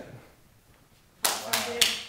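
Hand claps, a quick run of sharp claps starting just over a second in.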